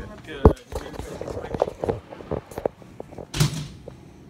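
Indistinct talking with a sharp thump about half a second in, and a short burst of rustling noise near the end, as from a handheld phone microphone being knocked and handled.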